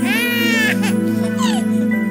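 A baby crying: one long wail, then two short cries, fading out by about a second and a half in. Gentle sustained music plays underneath.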